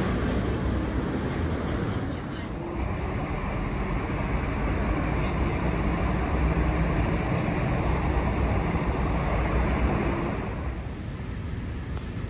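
City street traffic noise: a steady rumble of vehicles. The sound shifts abruptly about two seconds in and again near the end.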